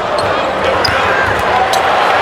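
Televised NBA game sound: a basketball bouncing on the hardwood court over steady arena crowd noise, with commentators' voices.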